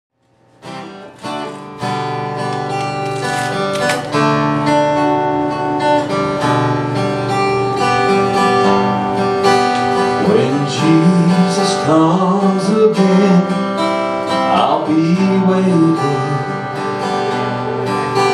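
Acoustic guitar strummed as a song's opening, starting about half a second in; a man's singing voice comes in over it about ten seconds in.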